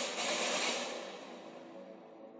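A hissing rush of noise that is loudest at the start and fades away over about two seconds, with faint steady tones beneath it.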